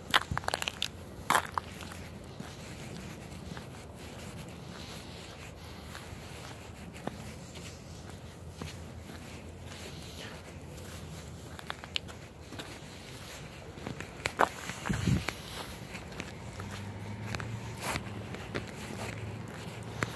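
Footsteps and clothing rustle of a person walking with a handheld phone, with scattered clicks of handling noise on the microphone. The clicks are loudest just after the start and again about three-quarters of the way through.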